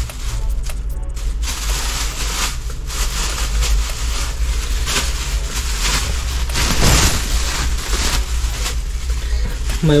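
Plastic bags crinkling and rustling as they are handled, a continuous run of crackles with a steady low hum underneath.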